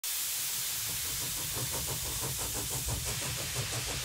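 Steam hissing steadily over the quick, even exhaust beat of a small steam engine running.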